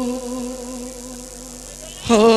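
A single held musical note, steady in pitch with a buzzy tone, slowly fading away.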